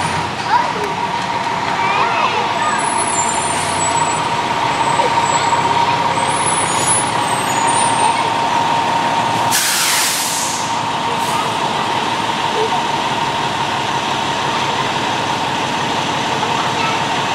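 Fire engine's diesel running in the station bay with a steady whine, then a loud short hiss of its air brakes about nine and a half seconds in, after which it settles a little quieter.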